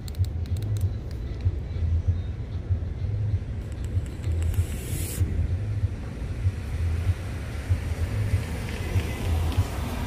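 A steady low rumble throughout, with a short hiss about five seconds in as a mouthful of vape vapour is blown out.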